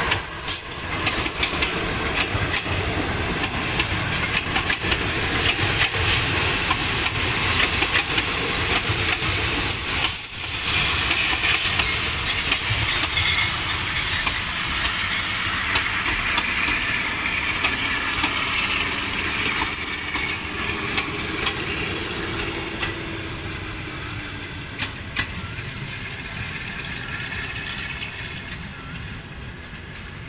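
Passenger train coaches rolling past on steel rails, the wheels running with frequent clicks over the track. The noise gradually fades over the last several seconds as the train moves away.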